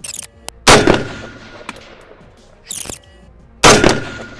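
Two rifle shots from a Daewoo K1 carbine (5.56 mm), about three seconds apart, each a sharp crack with a long echoing tail. A quieter crack falls between them.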